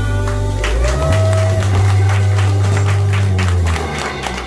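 A live rock band of electric guitar, bass guitar and drums playing the ending of a song. The bass holds a low note, and a guitar note bends up and is held about a second in. The music drops away shortly before the end.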